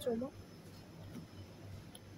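A brief spoken word at the start, then faint shop room tone with a low steady hum.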